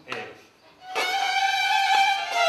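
Violins begin playing about a second in, after a brief near-silent pause, holding long bowed notes.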